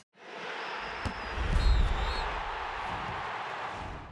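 Broadcast graphic transition sound effect: a rushing whoosh with a deep bass hit strongest about a second and a half in, holding steady, then fading away at the end.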